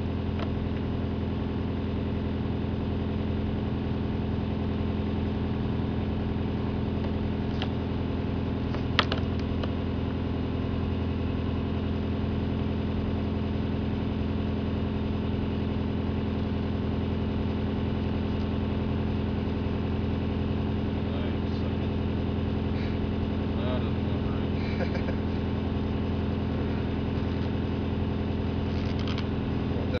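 Engine of a horizontal directional drill rig idling steadily, with a single sharp click about nine seconds in.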